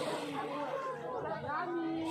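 People's voices chattering, with no single clear speaker; near the end one voice holds a drawn-out note for about half a second.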